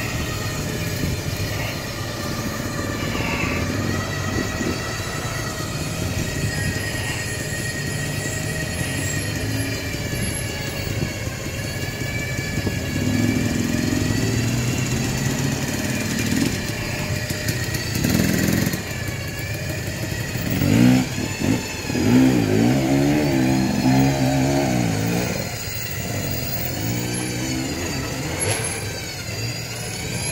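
Smittybilt X2O electric winch running under load with a steady whine while it pulls a Toyota Tacoma backward out of deep mud, mixed with engine noise. About two-thirds of the way in, an engine revs up and down in a louder stretch.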